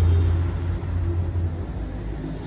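Low engine rumble of a passing road vehicle, loudest at first and fading after about the first second.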